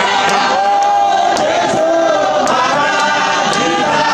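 A church congregation singing a hymn together, with sharp hand claps falling at a steady beat.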